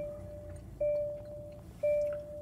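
2019 Hyundai Sonata's dashboard warning chime, a clear single tone repeating about once a second, sounding with the cluster in its ignition-on system check and warning lights lit.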